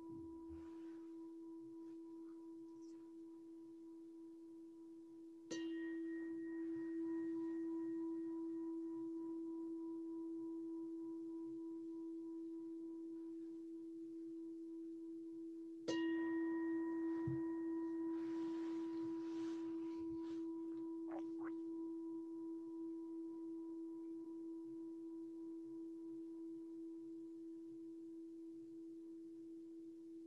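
A meditation bell struck twice, about five seconds in and again about sixteen seconds in. Each time it rings on one clear pitch and fades slowly over many seconds. At the start, the ringing of an earlier strike is still dying away.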